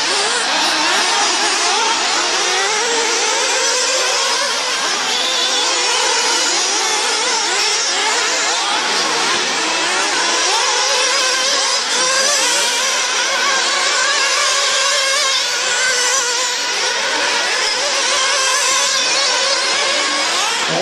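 Several 1/8-scale RC off-road buggies' small nitro engines revving hard, their many overlapping high-pitched whines rising and falling continuously as the cars accelerate and brake around the track.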